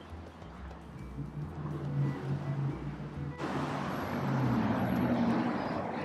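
Road traffic on a multi-lane city boulevard, with a car passing close by and growing louder about halfway through, under soft background music.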